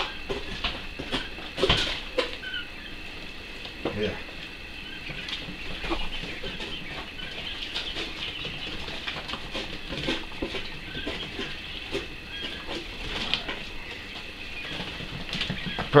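Coturnix quail chicks peeping steadily in the brooder, with a few scattered knocks and scrapes from the cleaning.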